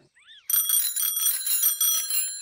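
Bicycle bells ringing in a rapid trill, several bell tones sounding together, starting about half a second in.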